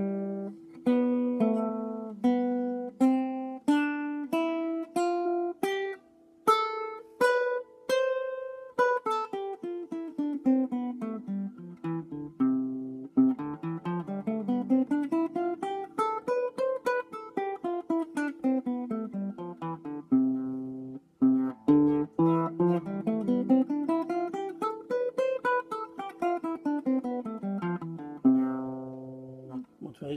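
Nylon-string cutaway guitar playing the C major scale over two octaves, one note at a time. It first climbs slowly, note by note, from the C on the fifth string's third fret, then plays quicker runs down and up the scale, rising and falling twice.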